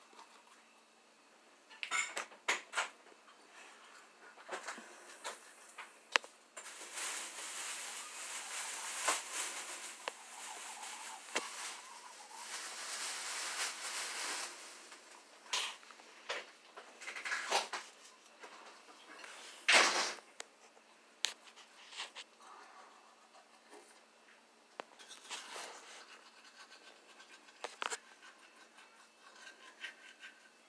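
Manual toothbrush scrubbing teeth: scratchy bristle brushing in irregular spells, with a longer unbroken stretch of scrubbing through the middle. A few sharp clicks break in, the loudest about two-thirds of the way through.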